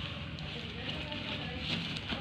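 Thin plastic shopping bag rustling and crinkling continuously as hands rummage inside it.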